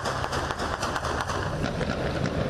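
Loud, noisy street commotion with a dense patter of quick footfalls and clatter as a group of people run, over a steady low rumble.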